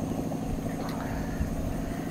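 A steady low engine-like hum with a rumble beneath it, holding at one pitch throughout.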